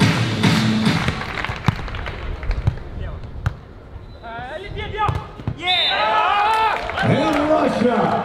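Stadium music with a beat playing for about a second, then the sharp knocks of a beach volleyball being played during a rally, then loud excited shouting from about halfway through.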